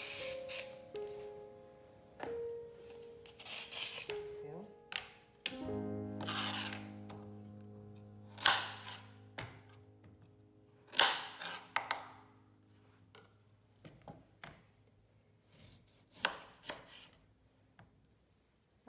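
A vegetable peeler scraping strips off a raw carrot, then a kitchen knife cutting through carrot and beetroot onto a cutting board in irregular strokes, the loudest about halfway through. Soft background music with long held notes plays underneath.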